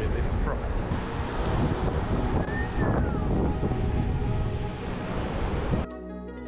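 Wind buffeting the microphone, with surf behind it and faint music underneath. Near the end the wind noise cuts off abruptly and the music carries on alone.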